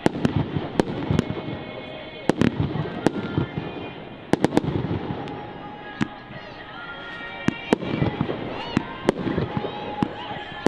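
Aerial firework shells bursting overhead: over a dozen sharp bangs at irregular intervals, several in quick clusters, over a continuous crackling haze.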